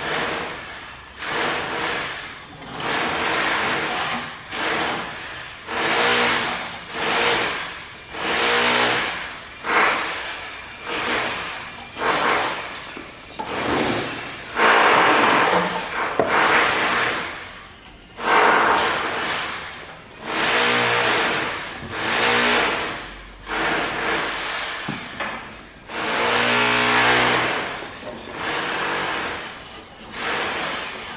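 Hand plastering tool scraped over fresh cement render at a door head in repeated rasping strokes, about one a second.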